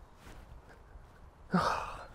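Low wind rumble on the microphone, then, about one and a half seconds in, a man's short, sharp breath that fades away over half a second.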